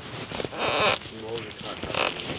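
A person's raised voice: a short, loud, strained shout about half a second in, then a few shorter wordless voice sounds.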